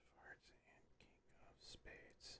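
Near silence with a man's faint whispered murmuring, a few soft hissing syllables standing out near the end.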